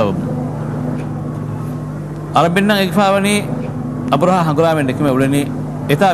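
Dubbed dialogue: a man speaking in two short stretches, starting about two seconds in and again about four seconds in, over a steady low hum.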